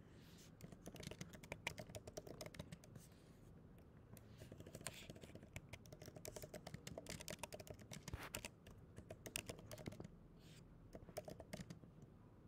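Faint typing on a computer keyboard: irregular runs of quick clicks, thinning out briefly around four seconds in and again near the end.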